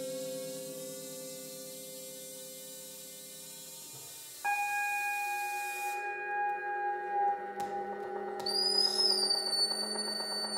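Free-improvised ensemble music of long held tones from pedal steel guitar, trombone, saw and electronics. A steady drone slowly fades for about four seconds, then a new, louder tone comes in abruptly. Near the end a high, thin tone enters above it, bending briefly before settling.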